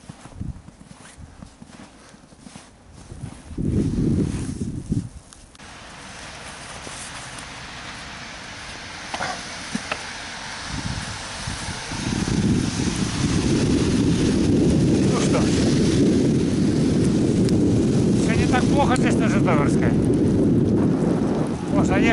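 Steady low rumble of wind on the microphone and bicycle tyres on a wet, slushy road while riding. It grows loud about halfway through, after scattered clicks and knocks in the first few seconds.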